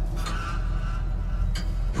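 Low, steady rumbling drone of a horror trailer's score and sound design, with a faint brief click about one and a half seconds in.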